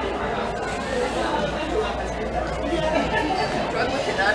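Indistinct chatter of several voices in a shop, with no clear words.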